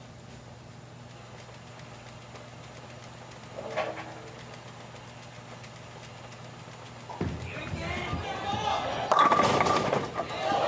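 Bowling shot at a tournament final. A steady low hum comes first. From about seven seconds in there is the clatter of the ball hitting the pins and the crowd cheering and shouting, rising to its loudest near the end.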